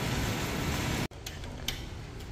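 Steady indoor background noise, like ventilation, that breaks off abruptly about a second in. It gives way to quieter room tone with two faint clicks.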